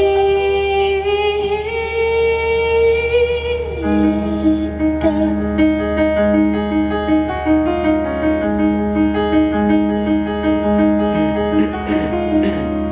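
Live solo piano and a woman's voice: a long sung note held, wavering slightly, for the first few seconds, then the piano carries on alone with a repeating figure of low notes, about one a second.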